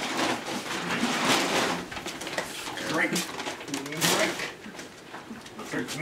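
A man gulping milk from a plastic gallon jug, with several noisy breaths between swallows.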